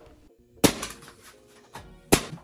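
A single shot from a Ridgid pneumatic framing nailer driving a nail into a 2x4 stud, about half a second in, over faint background music.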